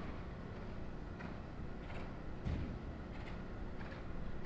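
A horse's hoofbeats on a sand arena surface, soft regular thuds with one louder thump about two and a half seconds in, over a steady low hum of the hall.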